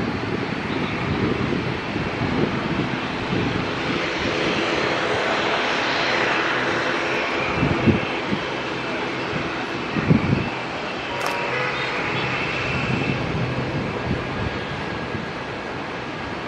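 Boeing 777-300ER on final approach, its GE90 turbofan engines making a steady rushing jet noise. A couple of short low thumps come through about halfway.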